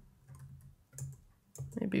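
A few faint clicks of computer keystrokes, then a woman's voice starts speaking near the end.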